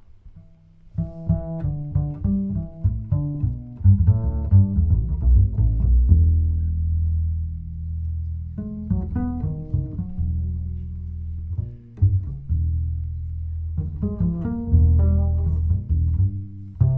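A jazz band starting a tune on plucked strings: runs of plucked notes over a low bass line, with long-held low bass notes about six seconds in and again from about ten seconds. The chromatic harmonica is not playing.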